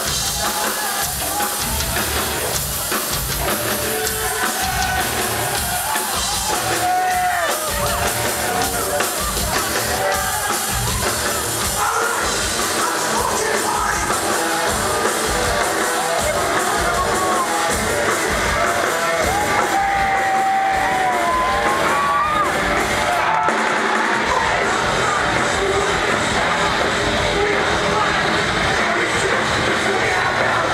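Hardcore punk band playing live and loud: drums pounding under electric guitar, with yelled vocals and the crowd shouting along.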